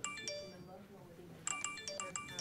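Smartphone message-notification chimes pinging again and again in quick, overlapping succession: a flood of incoming customer chat messages. A pair of pings comes at the start, then a rapid run of several about one and a half seconds in.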